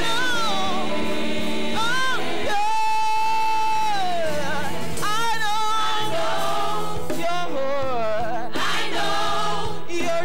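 Gospel choir and lead singers singing with a live band of drums, bass guitar and keyboards. About a quarter of the way in, one long note is held for about a second and a half.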